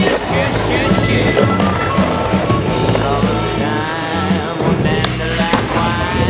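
A skateboard rolling on smooth concrete, with sharp clacks of the board and wheels hitting the surface as tricks land, under a song with a steady beat.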